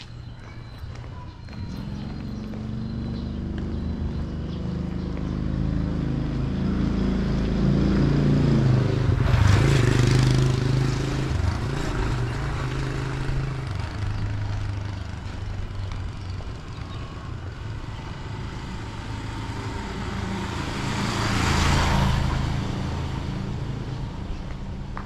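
Engines of vehicles passing on a street: one builds up and passes, loudest about ten seconds in. A second one, a motorcycle, rises and passes near the end.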